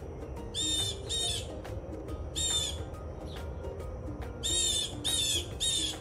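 A blue jay's harsh, squawking calls, six short cries in loose groups, two near the start and three near the end, over soft background music.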